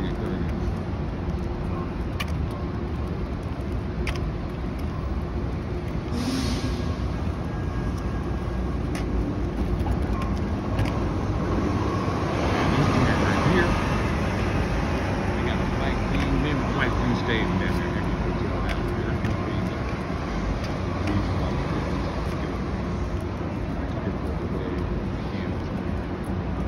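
Steady city street traffic noise from passing cars. A brief hiss comes about six seconds in, and a louder swell, as of a vehicle going by, around twelve to fourteen seconds in.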